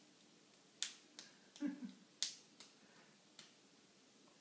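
A baby clapping its hands, about six sharp, irregular claps spread over a few seconds, with a short baby vocalisation near the middle.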